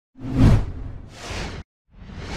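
Whoosh sound effects for an animated logo intro: a loud swoosh with a deep low thud about half a second in, a second swoosh that cuts off abruptly about one and a half seconds in, and another beginning just before the end.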